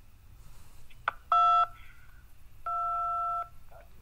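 Two touch-tone keypad beeps of the '2' key over the phone line, the first short and loud, the second longer and softer, about a second and a half apart, after a small click. They select option 2 in the phone menu, to reach a live representative.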